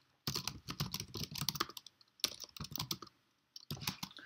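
Computer keyboard typing in three quick bursts of keystrokes with short pauses between them.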